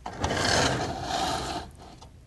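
A two-pan balance with red plastic pans being handled and set in place on a lab bench: a rubbing, scraping sound lasting about a second and a half, fading near the end.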